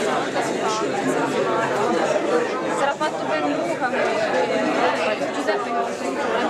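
Audience chatter: several people talking at once, a steady babble of overlapping voices with no single speaker standing out.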